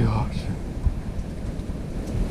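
Wind buffeting the microphone: a steady low rumble, with a brief snatch of a voice at the very start and a small knock a little under a second in.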